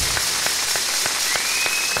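Applause with scattered hand claps at the end of a song. A high, steady whistle joins about halfway through.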